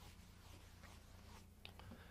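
Near silence: room tone with a faint steady low hum and a few faint soft ticks.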